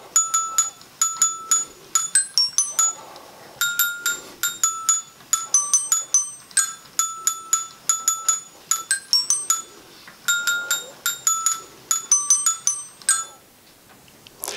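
Smartivity Music Machine, a hand-cranked wooden kit, playing a tune: pins on the turning drum trip armatures that strike coloured metal glockenspiel bars, giving a string of bright, ringing notes in phrases, stopping near the end. Its base is bent to a shallower armature angle, so the armatures slip off one pin before the next catches them and more of the notes sound.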